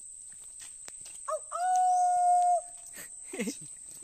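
A single loud, long call: a short rising note, then one steady pitch held for about a second before it stops.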